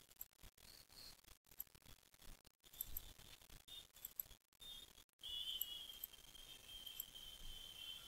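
Near silence: faint room tone and hiss, with a faint, steady high-pitched whine entering about five seconds in.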